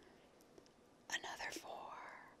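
Near silence for about a second, then a soft, breathy whisper of a woman's voice.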